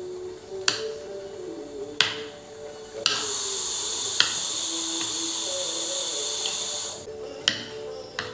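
A kitchen knife knocking sharply on a wooden chopping board five times while slicing garlic cloves, over soft background music. From about three seconds in, a loud steady hiss runs for about four seconds and then cuts off.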